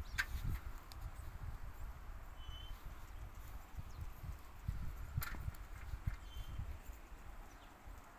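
A few hollow knocks and clacks of a steamed wooden stick being worked against the grooved rollers and frame of a metal stick-straightening jig, over a low, uneven rumble.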